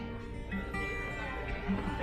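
Acoustic guitar played quietly between vocal lines: chords ring on, and a few new notes are picked.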